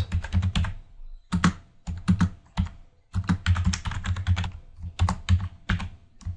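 Typing on a computer keyboard: clusters of quick keystrokes separated by short pauses.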